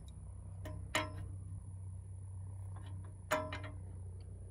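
Steel adjustable wrench clinking against a nut and the steel frame of a canopy as it is fitted and turned: two sharp metallic clinks with a short ring, about a second in and again past three seconds, with lighter ticks between, over a steady low hum.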